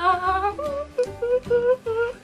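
A person humming a string of short wordless notes while stalling for an answer.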